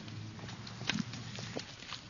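Faint, irregular footsteps or taps, a handful of short clicks over a steady background of recording hiss and low hum.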